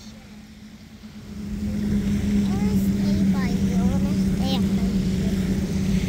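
A motorboat engine running steadily, building up about a second in and then holding at a constant pitch. A few short chirping calls sound over it in the middle.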